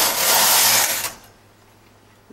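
Knitting machine carriage pushed across the needle bed to knit a short row, a steady sliding rush that stops about a second in.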